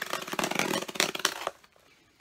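Packaging rustling and crinkling as comic books are unpacked by hand: a dense crackle for about a second and a half that then stops.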